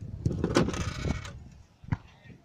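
Plastic handling noise at a wall-mounted irrigation controller: a scraping clatter lasting about a second, starting shortly after the beginning, then a single sharp click near the end.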